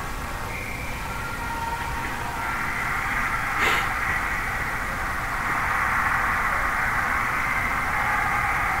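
Ice hockey game sound at rink level: a steady wash of arena noise from crowd and skating that swells a little about two and a half seconds in, with one sharp knock about three and a half seconds in.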